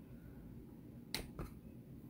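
Two sharp clicks about a quarter second apart, a little past the middle, the first the louder, from makeup items being handled on the table.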